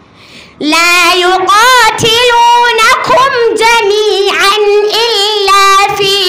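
A young girl chanting Qur'anic recitation (tajweed) into a microphone, coming in after a short breath about half a second in, with long held notes and wavering, ornamented turns of pitch.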